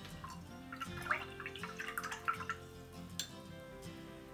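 Soft background music, with a brief bout of watery sloshing and dripping from about one to two and a half seconds in: a paintbrush being rinsed in a water jar between colours.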